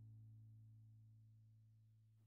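Near silence: only the faint, fading tail of a low, steady background tone.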